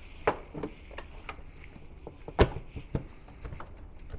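Battery case lid being fitted and pressed into place: a few scattered knocks and clicks, the loudest about two and a half seconds in.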